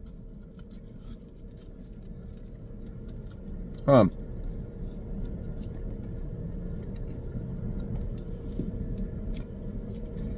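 A car's air conditioning blowing steadily inside the cabin, with a faint steady hum under the rush of air. Faint small clicks and mouth sounds from eating sit above it.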